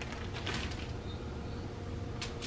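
Quiet handling sounds: faint rustles as strips of precooked bacon are laid onto a foil-lined baking pan, over a low steady hum.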